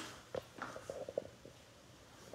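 Faint handling sounds of hands working through a mannequin head's hair: a few soft taps and rustles in the first second or so, then near quiet.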